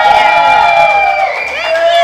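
A woman's loud, drawn-out high-pitched "woo", held for over a second, then a second shorter held cry near the end.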